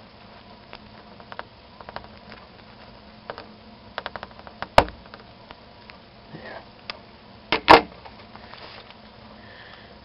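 Pliers working on a dyed craft popsicle stick: light clicks and small cracks as the jaws bite into the brittle wood, then two sharp snaps about three seconds apart, the second the loudest, as the stick breaks cleanly in two.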